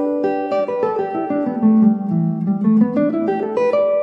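Clean-toned semi-hollow electric guitar playing a run of single notes on the E minor pentatonic scale (E G A B D), stepping down and then climbing back up, the notes ringing into each other.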